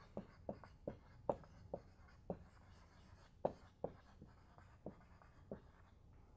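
Marker writing on a whiteboard: a run of short, irregular strokes and taps as the letters of a word are written.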